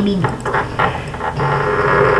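A person's voice trailing off at the start, then a steady low hum.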